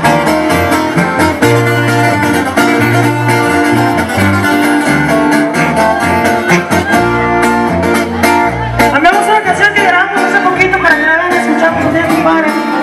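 Live band music: guitar over a bass line that changes notes every half second or so, with a voice coming in near the end.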